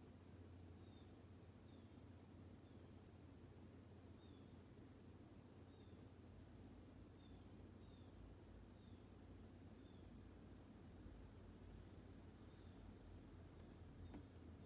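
Near-silent room tone with blue jays faintly calling outside, muffled through a window glass: thin, short falling notes repeated roughly once a second, pausing for a couple of seconds near the end.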